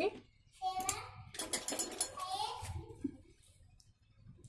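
A faint voice in the background, much quieter than the narration, with a few light clicks about one and a half seconds in as fabric is handled at the sewing machine.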